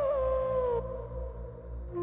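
Background score: a wavering, theremin-like held melody line slides down in pitch and fades about a second in, over a low pulsing bed; a new steady held note comes in at the very end.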